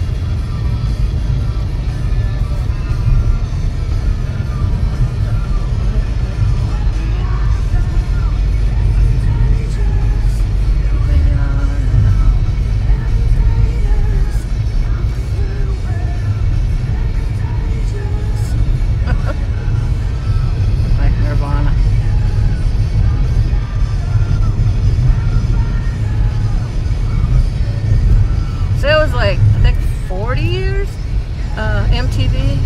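Steady low road and engine rumble inside a moving car's cabin, with music playing quietly over it, most likely from the car radio. A brief voice rises near the end.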